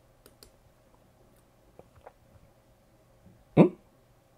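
A few faint computer-mouse clicks, then a single short, loud vocal sound like a hiccup or a clipped 'hm' near the end.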